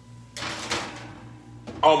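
Things being handled in an open kitchen drawer, a scraping, rustling noise lasting about a second.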